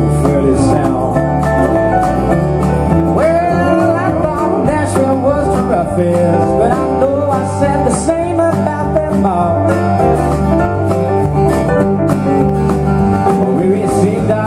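Live country band playing: a male voice singing over a strummed acoustic guitar, an electric guitar and drums, with a steady beat.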